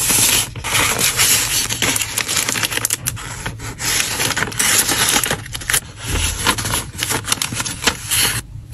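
Paper bag crinkling and rustling as plastic-sleeved photocards and packets are slid into it, a dense crisp crackle full of sharp little clicks, with a soft low bump about six seconds in.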